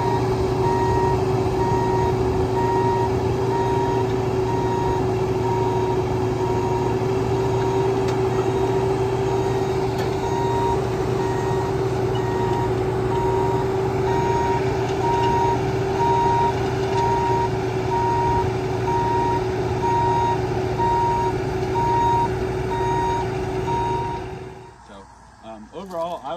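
Bobcat E26 mini excavator engine and hydraulics running with a steady drone and whine while its travel alarm beeps rapidly and evenly as the machine tracks on the trailer's steel ramps. The sound stops suddenly near the end.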